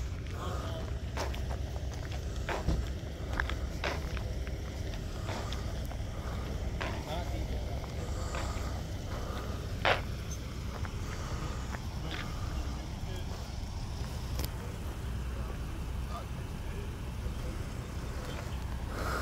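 Footsteps and knocks from handling the phone, spaced about a second apart in the first half, over a steady low rumble, with faint voices.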